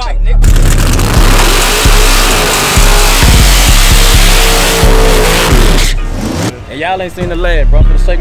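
Drag car doing a burnout: rear tyres spinning and squealing against the pavement with the engine held at high revs. It goes on for about five seconds, then cuts off suddenly.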